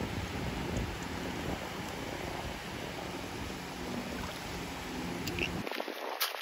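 Wind buffeting the microphone over the rush of small waves washing the shallow shoreline, a steady noise with a low rumble that cuts off abruptly near the end.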